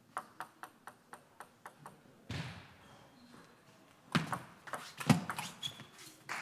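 Celluloid-style table tennis ball bounced repeatedly with light clicks, about five a second, for the first two seconds as the server readies the serve. About four seconds in comes a quick rally of sharp paddle-and-table ball hits, the loudest a little after five seconds, ending the point.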